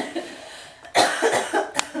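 A person coughing: one loud cough about a second in, followed by a couple of smaller ones, then a sharp click near the end.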